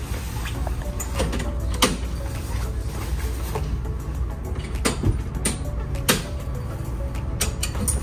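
A boat's bimini top being pulled down and folded on its tower frame: canvas rustling, with several sharp clicks and knocks from the metal frame, over a steady low hum.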